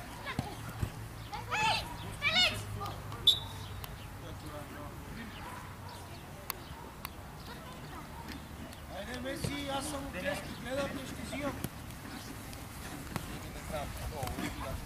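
Voices of people playing a small-sided football game: two short shouts about two seconds in and murmured talk later on, with a few sharp knocks of the ball being kicked.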